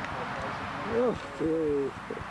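Two drawn-out vocal calls, a short rising-and-falling one about a second in and a longer held one just after, over faint background voices.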